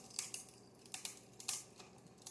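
Light clicks and clatter of plastic cups being handled: a handful of scattered, faint taps.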